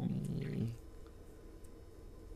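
A man's low, drawn-out hesitant "ummm", slightly creaky, trailing off well under a second in. A low steady background hum follows.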